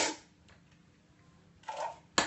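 A person drinking water from a small cup. A breathy rush of air trails off at the start, then it is quiet, then a short sip comes near the end.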